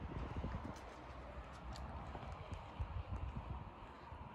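Footsteps on wet asphalt: an irregular run of soft, low thuds with a few faint clicks.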